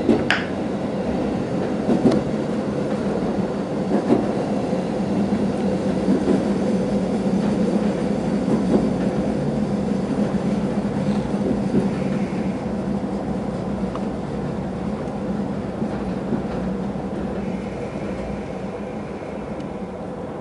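KiHa 40 series diesel railcar heard from inside the cabin: the engine running and the wheels rolling on the rails, with single rail-joint clicks that come further and further apart. The sound slowly drops as the train slows into the station, and a faint high squeal comes near the end.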